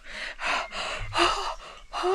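A woman gasping twice in short, breathy breaths as she lowers herself into cool pool water.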